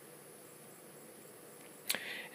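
Quiet room tone: a faint steady hiss with a thin high-pitched whine, and one short click near the end.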